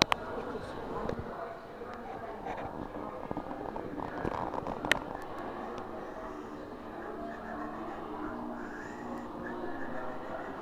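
Indistinct chatter of other people talking in a hall, with two sharp clicks, one at the very start and one about five seconds in.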